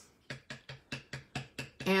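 A quick, even run of light clicks, about six a second, from craft supplies being handled on the desk.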